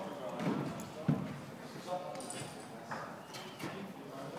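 Indistinct voices in a large echoing hall, with a single sharp knock about a second in.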